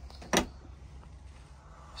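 A motorhome's fridge door being shut: one short clunk about a third of a second in.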